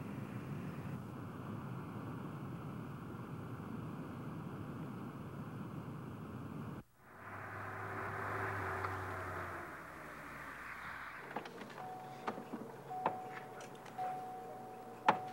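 Car engine and road noise inside a moving car, cutting off sharply about seven seconds in. Then a car outside with a faint low engine hum, and near the end a run of sharp clicks and knocks, with a faint ringing tone, as a car door is opened.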